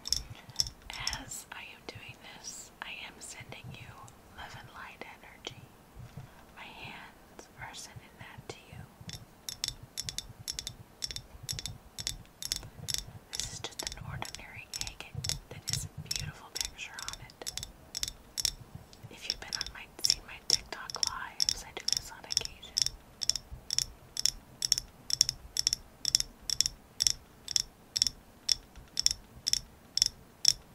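Long fingernails tapping steadily on a flat polished stone, about three sharp clicks a second, growing much louder in the second half. Soft whispering runs alongside the taps in the first part.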